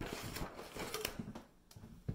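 Close rustling and clattering handling noise with several sharp knocks as a ruler and marker are picked up near the microphone; it dies down in the last half second.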